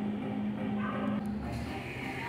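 Coffee shop room sound: background music with a murmur of voices, and a rushing noise that comes up about one and a half seconds in.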